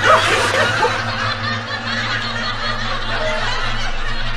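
Snickering laughter over a steady low hum.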